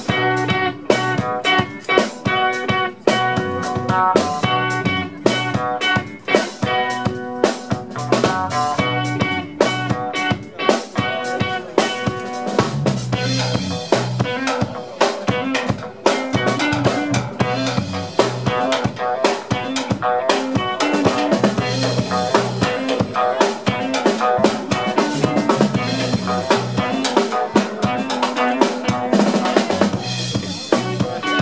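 A rock band playing live: a drum kit with bass drum, snare and cymbals to the fore, over electric guitar and bass guitar. About halfway through the low notes grow heavier and the sound fuller.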